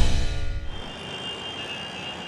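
Dramatic background music ringing out and fading away. It is followed by faint night-time ambience with a thin, steady high tone.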